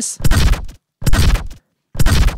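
A bass-heavy designed sound effect played back: three heavy hits about a second apart, each with deep low end and a hissy top, described as having a lot of bass.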